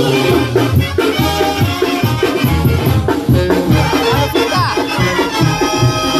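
Live Mexican banda music, with a brass section of trumpets and trombones playing over a steadily pulsing tuba bass line.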